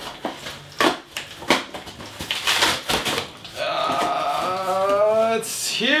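Cardboard shipping box torn open by hand: tape and cardboard ripping and crackling in a series of sharp tears. From about three and a half seconds in, a man's drawn-out, rising vocal sound takes over.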